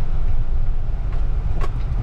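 Car cabin noise while driving on an unpaved dirt road: a steady low rumble from the engine and tyres, with a couple of light clicks in the second half.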